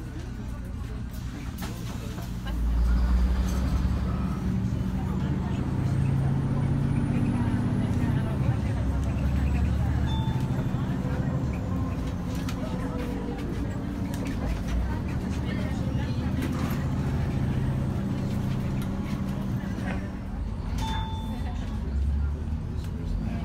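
City bus engine running, heard from inside the passenger cabin, a steady low drone that grows louder about three seconds in as the bus picks up speed.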